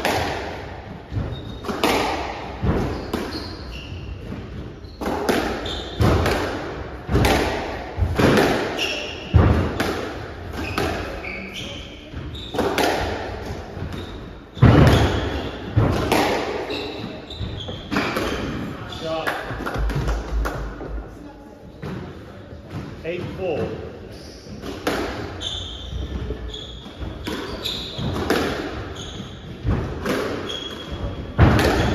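A long squash rally: the ball is struck by the rackets and smacks off the walls, with a sharp, echoing crack about every second. Short squeaks from shoes on the wooden court floor come between the shots.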